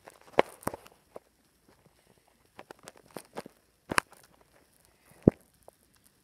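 Scattered footsteps and soft knocks on a carpeted floor, at irregular spacing, with a few sharper taps and a heavier thump about five seconds in.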